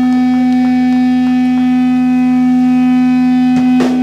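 Amplified electric guitar holding a single loud, steady droning note with overtones. Drum kit hits come in near the end.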